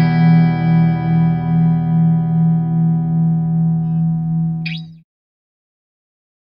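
Outro music: a single guitar chord struck and left to ring, pulsing with an effect as it slowly fades, with a brief high scrape just before it cuts off about five seconds in.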